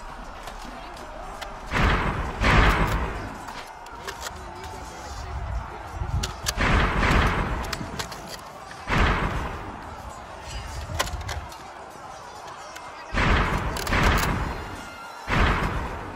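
A run of loud thuds, about seven, coming singly and in pairs a few seconds apart, each with a short ringing tail, like blows struck in a staged fight.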